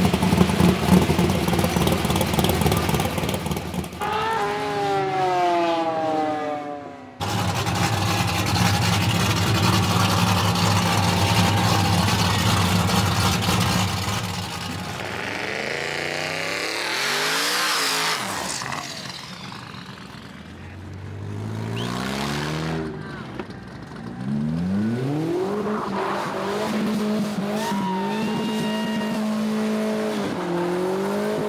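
Loud hot-rod and truck engines in a string of short cuts: a supercharged V8 rumbling as it pulls away, vehicles driving past with a falling pitch, and an engine revving up in pitch later on.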